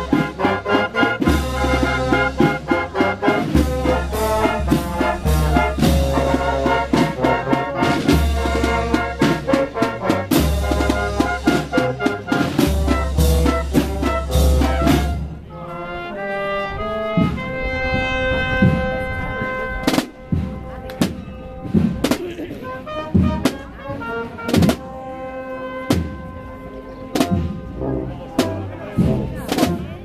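Street brass band of saxophones, trumpets and trombones with snare and bass drums playing. For about the first half the full band plays with a heavy low beat; then it drops to a thinner passage of held brass notes punctuated by sharp drum strokes.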